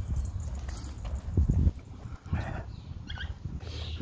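Siberian husky in a harness moving about on concrete: scattered light taps and a few short breaths, over a low rumble.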